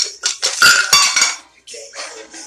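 Ice cubes dropped into a cocktail shaker, a quick run of hard clinks and clatter over the first second and a half that then dies down.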